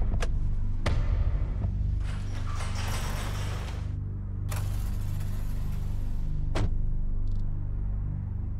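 Low, steady background music under a car door being handled: two clicks in the first second, rustling as someone climbs in, and the door shutting with a thud about six and a half seconds in.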